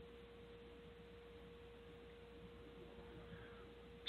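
Near silence, dead air on an internet call-in radio stream, with a faint steady single-pitched tone.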